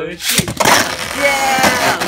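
A Beyblade spinning top ripped from its launcher into a clear plastic stadium. A sudden sharp launch about half a second in, then the top spinning and rattling against the plastic floor.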